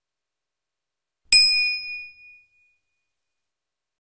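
A single bright bell ding about a second and a half in, ringing out and fading over about a second: the notification-bell sound effect of a YouTube subscribe-button animation.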